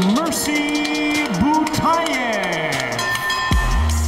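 Music under a ring announcer's long, drawn-out call, his voice swooping up and down and holding notes. Near the end a heavy electronic bass beat drops in.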